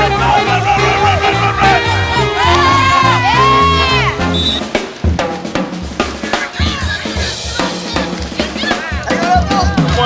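Soundtrack music with a bass line, a melody and a drum kit; about halfway the melody drops away and the drums carry on with snare hits.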